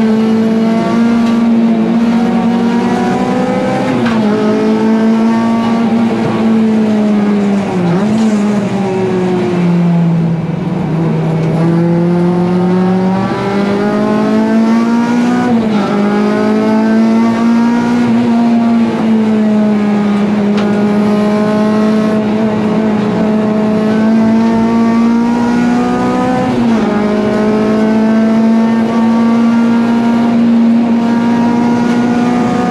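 Honda Civic EG race car's engine heard from inside the cabin under racing load, its note climbing through the revs and dropping sharply at each gear change, then slowing and rising again through the corners.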